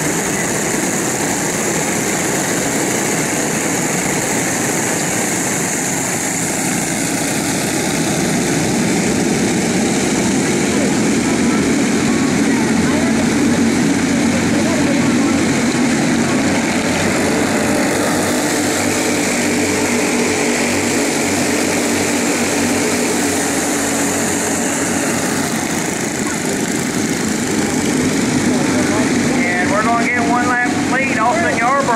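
Several racing go-kart engines running at speed, a loud, continuous blended engine noise with no breaks.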